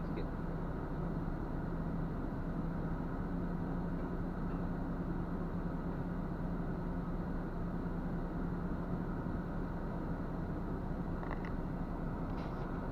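Diesel engine idling steadily with an even low hum, heard from inside a truck cab.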